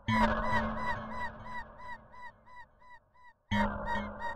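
Experimental dubstep beat: a short electronic note stutters about four times a second over a held low tone and fades out over about three seconds. After a brief silence the pattern comes back in loudly with deep bass near the end.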